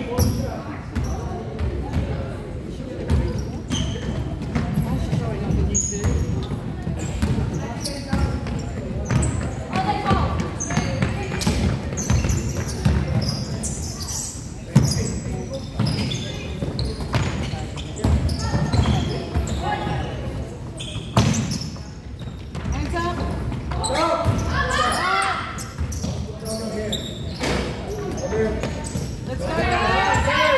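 Basketball being dribbled and bouncing on a wooden gym floor, with sharp repeated thuds, short high sneaker squeaks and indistinct voices calling. The sound echoes around a large hall, and the voices rise about three-quarters of the way through.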